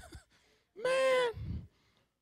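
A person's voice giving one drawn-out, high exclamation at a steady pitch, lasting about half a second and starting a little under a second in.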